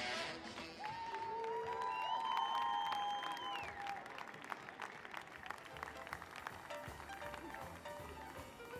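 Audience applauding as the dance music ends, the clapping thinning out over the seconds. A few held high-pitched tones sound over the clapping from about a second in to about four seconds in.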